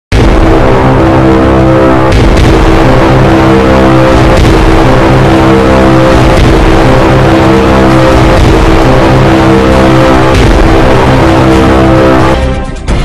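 Loud news-channel intro theme music: sustained chords that change every second or two over a pulsing low beat, with a few sharp hits along the way.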